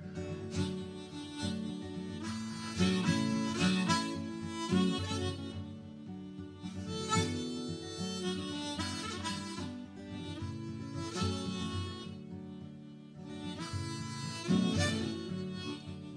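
Harmonica, played in a neck rack, taking an instrumental solo over a strummed acoustic guitar, the break between sung verses of a folk song.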